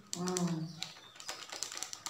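A crinkly packet crackling and rustling in the hands as henna powder is shaken out of it into a steel bowl: a run of small, irregular ticks. A woman's voice is heard briefly at the start.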